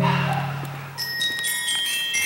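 Percussion ensemble music: low mallet-percussion notes fading out over the first second, then high, bell-like metal percussion notes that ring on from about a second in.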